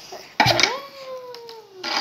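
A single meow-like cry about half a second in, rising briefly and then sliding slowly down in pitch for over a second, followed by a short noisy burst near the end.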